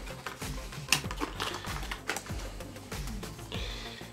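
Clear plastic blister packaging clicking and crackling as a small remote control is worked out of it by hand, with a sharp click about a second in.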